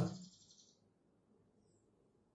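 A man's speech trailing off into a pause: a faint high hiss dies away within the first second, leaving near silence.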